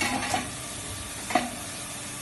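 Steady sizzling hiss of a two-station circular welding machine at work on stainless-steel kettle bodies, with a short clatter at the start and one sharp metallic clank with a brief ring about a second and a half in.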